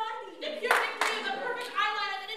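Women's voices performing spoken-word poetry into microphones, with a short burst of clapping about two-thirds of a second in.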